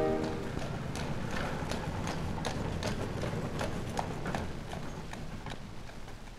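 Horse hooves clip-clopping at a steady walk, about two and a half to three steps a second, fading away: a sound effect on an old 78 rpm record. A music chord dies away in the first moment.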